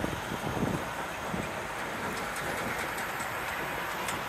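Road traffic noise from tractor-trailer trucks driving past close by in the next lane: a steady noise of engines and tyres.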